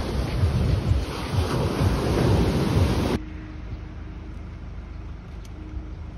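Sea waves breaking on a sandy beach, with strong wind buffeting the microphone in low gusty rumbles. About three seconds in it cuts off suddenly to a much quieter, steady low hum.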